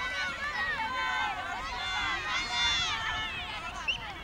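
Many high-pitched children's voices shouting and cheering at once, overlapping throughout, with a low rumble underneath.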